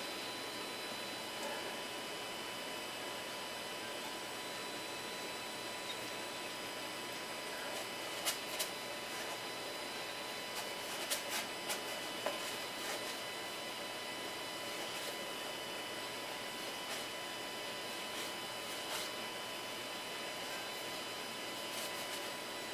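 Steady electrical hum with a faint high whine, with a few soft clicks and rustles about eight, eleven and nineteen seconds in as a sheet of paper is slid back and forth under a 3D printer's nozzle to set the bed height.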